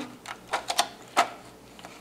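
A few light clicks and crackles of thin plastic film as fingertips press and smooth a new FEP sheet down onto an aluminium resin vat.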